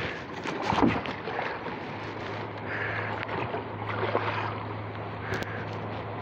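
Rustling handling noise from a handheld phone in a small boat, with one thump about a second in, over a steady low hum that firms up about two seconds in.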